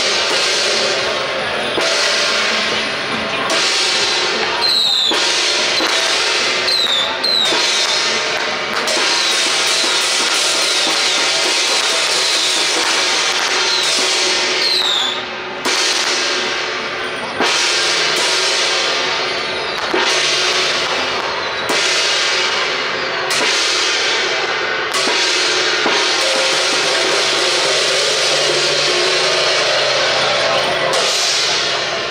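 Traditional Taiwanese temple-procession percussion: drum, crashing cymbals and a hand-held gong beaten in a loud, continuous, driving rhythm, accompanying a costumed troupe's ritual performance.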